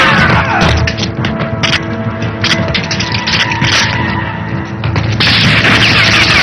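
Action-film score playing over a string of crashes and bangs as a vehicle smashes through a wooden stall, sending debris flying. The loudest crashes come at the very start and again near the end.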